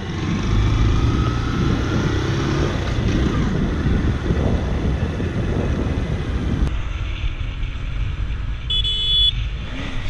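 Motorcycle riding in traffic, heard from the rider's helmet camera: steady engine and road noise. A short horn honk sounds about nine seconds in.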